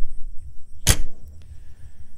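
A motorhome's exterior basement storage compartment door is swung shut and closes with one sharp slam about a second in, over a low rumble.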